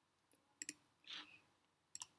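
Computer mouse button clicks while closing dialogs: a single click, a quick pair just after half a second, and another right at the end, with a short soft rustle about a second in.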